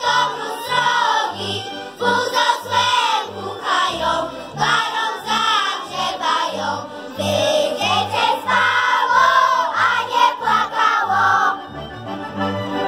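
A children's group singing a folk song together, over an instrumental accompaniment whose bass notes pulse in a steady, even beat.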